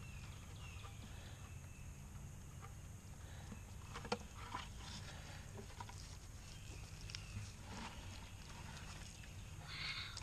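Quiet outdoor ambience over a steady low hum, with faint clicks and one sharp tap about four seconds in as the wire-mesh trap and plastic bucket are handled. A few faint short high chirps.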